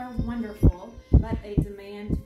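A woman talking, her voice interrupted by several dull low thumps, the loudest sounds in the stretch.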